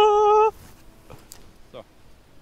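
A man's brief, high-pitched excited cry, held on one pitch for about half a second, followed by quiet outdoor ambience with a couple of faint clicks.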